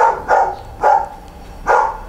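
A dog barking repeatedly: three short barks a little under a second apart.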